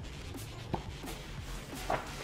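A comic book being handled: light paper rustling and shuffling, with a brief sharp rustle about three-quarters of a second in and a louder one near the end as it is set down.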